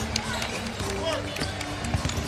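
Arena background music with held notes, playing over crowd noise in a basketball arena during live play, with the sharp knocks of a ball being dribbled on the hardwood court.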